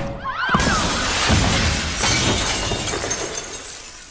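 A glass basketball backboard shattering: a sudden crash about half a second in, then a long spray of breaking and falling glass that fades over the next few seconds.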